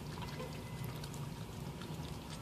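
Small dog licking a soft-serve ice cream cone: wet licking sounds with scattered small clicks, over a low steady hum.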